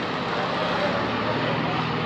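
Diesel engine of a large Tata tipper truck running with a steady low hum, under general street traffic noise.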